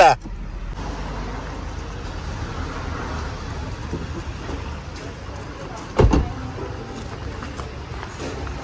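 A car door being shut with one thud about six seconds in, over a steady background of street noise.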